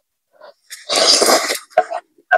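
A person slurping a mouthful of ramen noodles: one loud, noisy slurp under a second long about halfway through, followed by a few short wet mouth clicks as she starts chewing.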